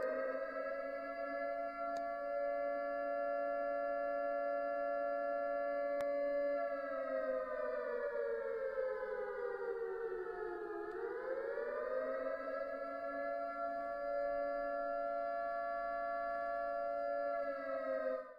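A siren wailing at a steady pitch, which slides slowly down about six and a half seconds in, winds back up about four seconds later, and then holds steady again.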